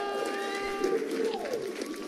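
Celebration sound effect played with an on-screen confetti burst: a held tone that ends about a second in, followed by a short falling glide, over faint crackling.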